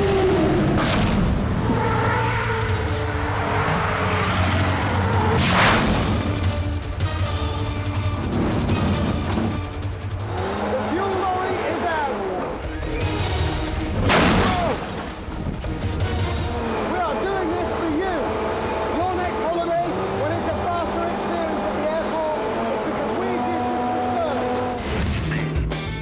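A music track plays over heavy airport service trucks and buses racing, with two loud crashes about six and fourteen seconds in, the second as a catering truck rams the side of a bendy bus.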